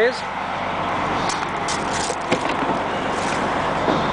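Steady rushing noise from a parked coach bus running, with a few light clicks.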